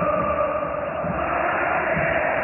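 Stadium crowd of football supporters singing a steady chant, with many voices holding the same notes.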